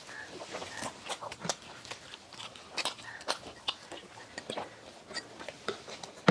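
Close-up chewing and mouth sounds of people eating soft cream-filled donuts: irregular short clicks and smacks throughout.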